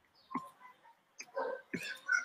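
Faint, brief murmured vocal sounds from a man: a short sound early on, then a quiet mumble of about half a second near the end, with near silence between.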